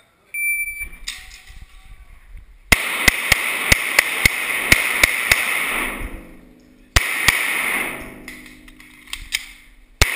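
A shot timer's short electronic start beep, then about two and a half seconds later a Glock pistol fired in rapid strings of shots, several a second, ringing off the concrete of an indoor range. A second, shorter string comes about seven seconds in.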